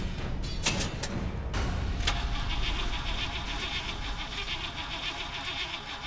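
A low engine rumble at a drag strip's starting line, where both cars have stalled. A background music track comes in about two seconds in.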